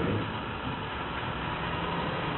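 A pause in speech: steady background hiss of the room and the sound system, with no distinct event.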